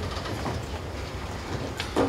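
Steady low room rumble with faint shuffling and a couple of small knocks, one near the start and a sharper one near the end, as people change places at a podium microphone.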